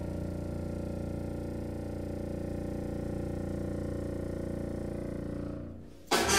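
A contrabassoon alone, holding one long, very low note, a buzzy tone that the score's caption likens to a fart. It fades out near the end.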